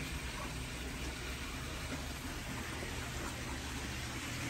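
Steady splashing hiss of water pouring from a pool's waterfall and fountain spouts, fed from the water line to top up the pool.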